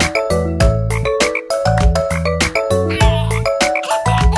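Bouncy children's song backing music with a steady beat and bass notes, with cartoon frog croaks over it.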